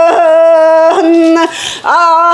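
A woman singing a Sakha toyuk unaccompanied, holding long steady notes with a short break about a second in and a brief pause near the end before the next phrase.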